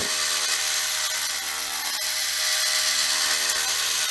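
Battery-powered toy gyroscope robot (Tightrope Walking Gyrobot) running, its gyroscope wheel spinning at high speed: a steady, even, high-pitched motor whir as it walks very slowly along the tightrope.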